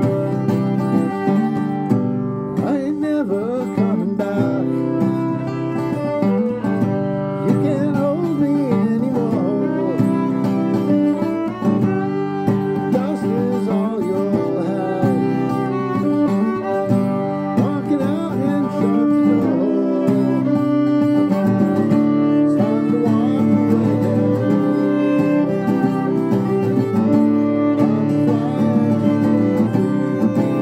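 Acoustic guitar and bowed violin playing a song together, the violin carrying a wavering melody over the guitar.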